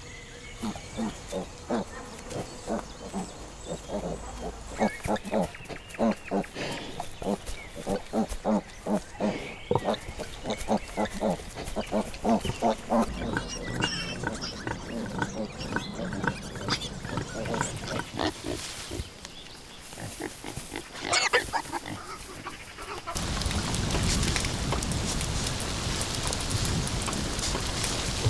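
Pigs grunting, a long run of short grunts in quick succession, with a single high, rising squeal about 21 seconds in. About 23 seconds in a steady hiss of rain sets in suddenly.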